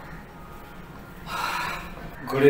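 Faint room tone, then a man's audible breath lasting about half a second, a little past the middle.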